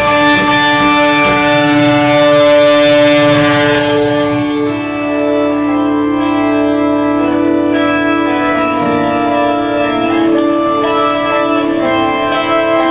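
Live rock band playing loud: drums and cymbals crash for the first few seconds, then stop about four seconds in, leaving distorted electric guitar and bass chords ringing out in long, organ-like held notes.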